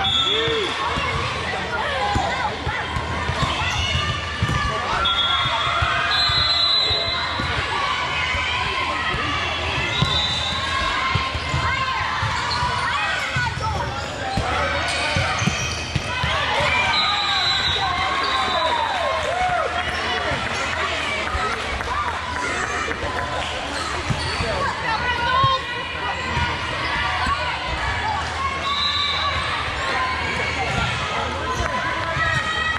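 Din of a busy indoor volleyball hall: many overlapping voices and shouts from players and spectators, a volleyball being struck now and then, and repeated short high squeaks of shoes on the court floor, all echoing in the large hall.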